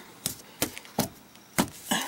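A handful of light, separate knocks, a hand touching the underside of an RV slide-out room's floor.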